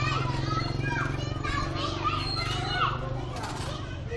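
Children calling out and shouting as they play, their high voices rising and falling in short bursts, over a steady low engine hum.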